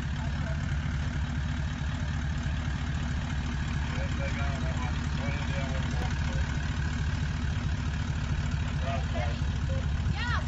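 Toyota Land Cruiser troop carrier's engine running steadily at low revs as it crawls over deep ruts on a dirt track. Faint voices of onlookers come in about halfway through and again near the end.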